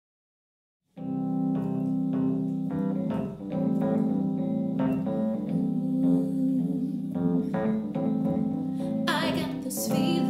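Fender Rhodes electric piano starting about a second in, playing a chordal intro in an even pulse of roughly two strikes a second. A woman's singing voice comes in near the end.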